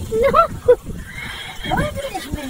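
A person laughing in short, high-pitched peals that rise and fall in pitch.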